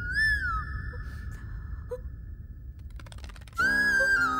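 Film background score: a flute holds one long note, bending up and down about a quarter second in and then sustaining before fading. Near the end, a louder flute melody over a steady drone comes in.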